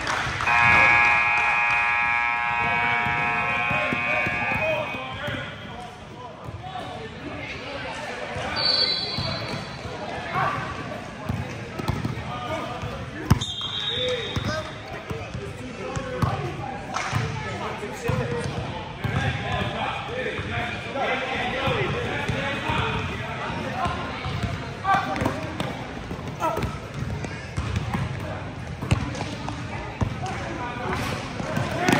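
Indoor basketball game: a scoreboard buzzer sounds steadily for about four seconds at the start, and a referee's whistle gives short blasts twice, a few seconds apart. Around them run a basketball bouncing on the hardwood floor, shoe squeaks and crowd chatter echoing in the gym.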